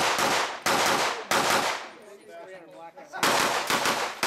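Rifle shots in rapid succession: a quick string of shots over the first second and a half, a pause of about a second and a half, then another quick string about three seconds in.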